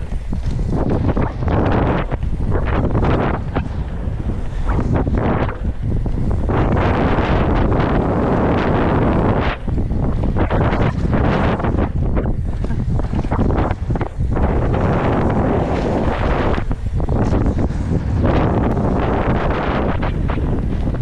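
Heavy wind buffeting a helmet-mounted GoPro's microphone on a fast mountain-bike descent of a dirt and gravel trail, with tyre noise and frequent knocks and rattles from the bike over bumps.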